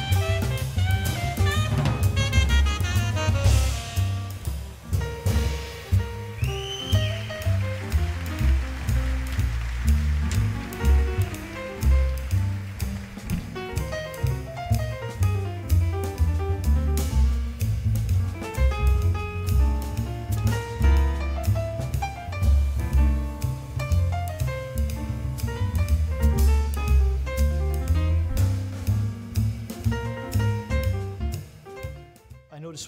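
Small jazz group playing live: upright bass notes moving steadily underneath, a tenor saxophone line near the start, then piano, with a drum kit and ride and crash cymbals throughout.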